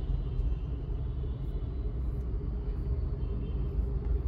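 Steady low rumble inside a Maruti Suzuki Brezza's cabin, with a few faint ticks.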